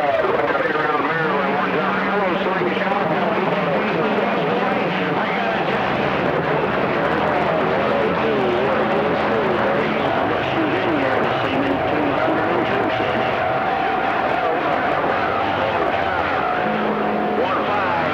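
CB radio receiving skip on channel 28: many distant stations' voices overlap into a garbled jumble under static, with a steady whistle joining about halfway through.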